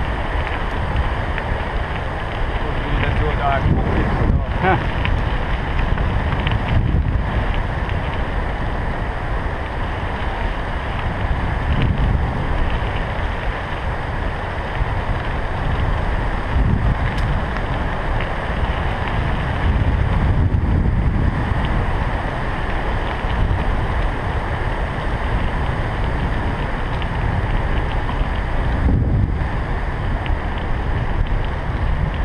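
Wind buffeting a bike-mounted action camera's microphone while cycling along a path, with a steady low rumble that swells and eases.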